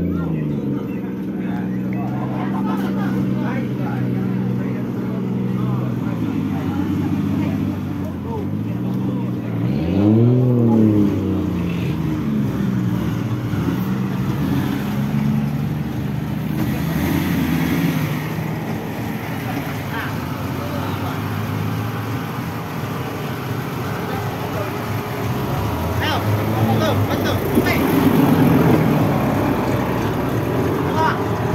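Engine of an off-road race buggy idling steadily, revved once briefly about ten seconds in, its pitch rising and falling back.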